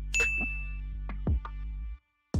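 Background music with a steady beat, and a bright ding about a quarter second in that rings briefly: the sound effect of an on-screen subscribe-button animation. The music cuts off at the very end.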